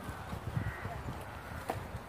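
Footsteps of a person walking on soft ground, heard as irregular soft thumps, with a sharper click near the end.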